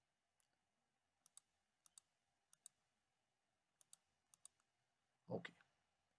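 Faint computer mouse clicks in quick pairs, five pairs spread over about three seconds.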